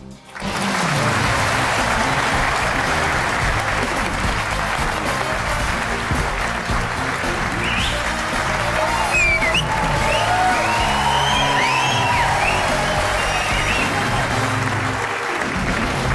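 Studio audience clapping over the programme's opening theme music, with whoops and whistles rising out of the crowd in the middle.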